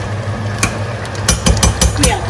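Metal spoon stirring thick egusi soup in a stainless steel pot, knocking and clicking against the pot's side several times, most of them in the second half, over a steady low hum.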